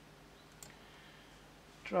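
A single short computer-mouse click about half a second in, against quiet room tone.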